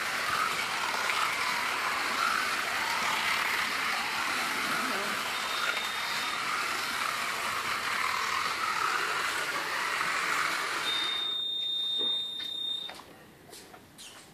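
Slot cars' small electric motors whining as they run round the track, the pitch wavering up and down with their speed. A short high beep sounds about halfway, and a longer steady beep about eleven seconds in, after which the motor noise stops.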